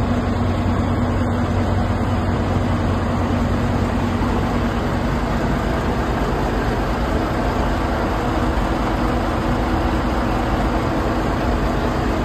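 Heavy truck engine idling steadily: an even, unbroken running sound with a low hum.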